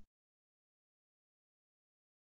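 Near silence: a dead-quiet pause between spoken phrases.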